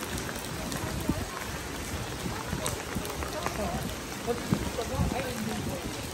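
Steady rain falling on a flooded paved walkway, with people's voices in the background during the second half.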